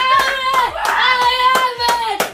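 Steady rhythmic handclaps, about three to four a second, with voices singing long held notes over them.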